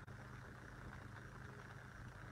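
Near silence: a faint, steady low hum of background noise.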